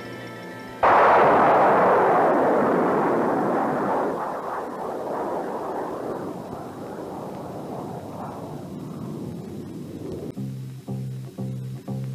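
Nike Hercules missile launching: a sudden loud blast of rocket roar about a second in, fading away over several seconds as the missile climbs.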